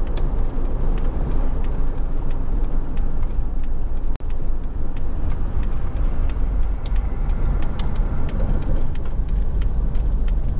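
Steady low rumble of a car on the move, with engine and tyre noise heard from inside the cabin and faint light ticks over it. The sound drops out for an instant about four seconds in.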